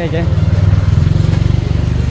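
A motorcycle engine running close by: a steady low rumble with a fast, even beat, strongest about half a second in and easing off slightly afterwards.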